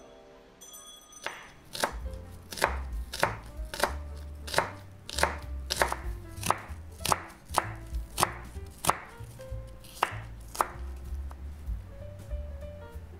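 Kitchen knife slicing the white part of a green onion into thin strips on a wooden cutting board: a steady series of sharp knocks of the blade on the board, about two a second.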